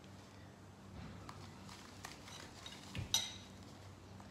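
Coconut sugar poured from a paper bag into a metal measuring cup, quiet, with a few light clinks and one sharper clink of metal about three seconds in.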